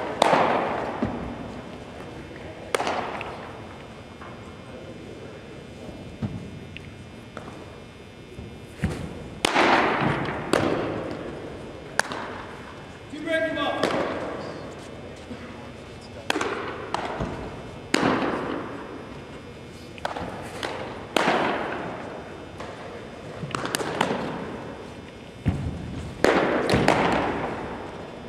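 Baseballs smacking into leather catcher's mitts in a large gym. There are a dozen or so sharp pops, each echoing off the hard walls, coming every one to three seconds, more often than one pitcher throws, with faint voices in the background.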